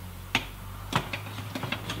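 Plastic quick-release hooks of an Ortlieb pannier clicking onto a bike's rear rack rail as the bag is set on. There are two sharp clicks about half a second apart, followed by lighter taps and rattles as it seats.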